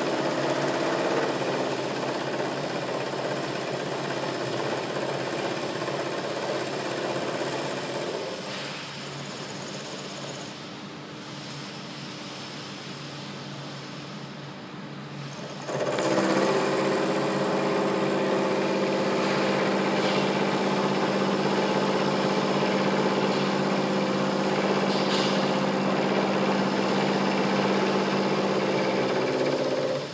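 Vertical milling machine running with an end mill face-milling a metal workpiece: a steady machine hum with several held tones. It drops quieter about eight seconds in, then comes back louder and steady about halfway through.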